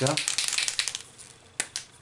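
A white Posca paint marker being shaken and handled: a quick clicking rattle for about a second, then two sharp clicks.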